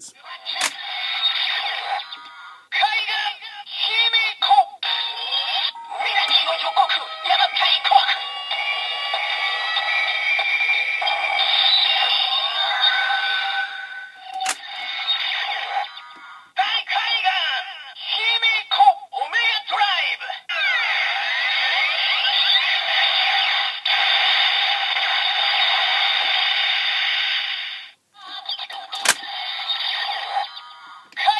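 Bandai DX Ghost Driver toy belt playing its electronic voice calls and music through its small, tinny speaker during an Eyecon demo. A few sharp plastic clicks come as the toy is worked: about half a second in, near the middle and near the end.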